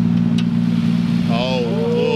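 A modified Nissan Skyline's engine idling steadily, a low even hum at an unchanging pitch. A person's voice calls out over it in the second half.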